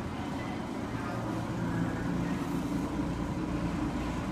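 Freedom carpet-cleaning machine running steadily, an even motor drone with a low steady tone.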